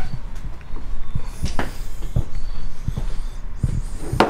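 Handling noise: irregular low thumps and a few sharper clicks, the sharpest about a second and a half in, over a steady low hum.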